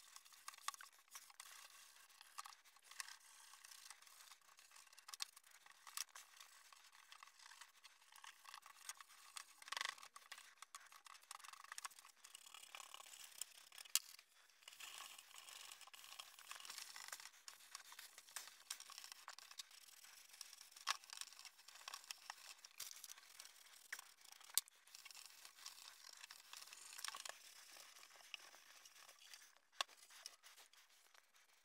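Faint rubbing and scraping of a wet wipe on a textured plastic terminal case, with scattered light clicks and knocks as the case is handled.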